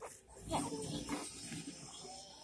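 Young baby cooing, a few short pitched vocal sounds, one sliding up in pitch about half a second in.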